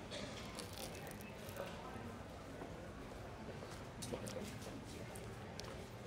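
Quiet chewing of a custard tart, with a few faint soft mouth clicks, over the low steady background hum of a quiet airport terminal.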